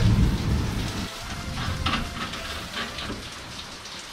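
Steady rain falling, with a low rumble of thunder in the first second.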